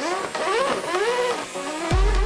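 Electronic intro music with a racing-car engine revving sound effect, its pitch sweeping up and down several times. A heavy bass beat kicks in near the end.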